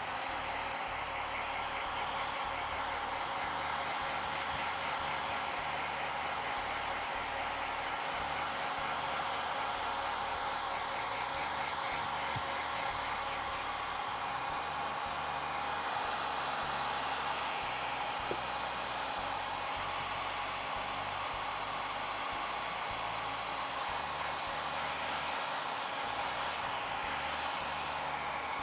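Handheld hair dryer running steadily, blowing air over wet paint on a wooden box lid to dry it.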